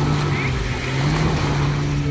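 A steady low motor-like hum over an even hiss of noise.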